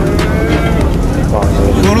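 Livestock calling at a busy animal market, long drawn-out cries over the steady murmur of a crowd.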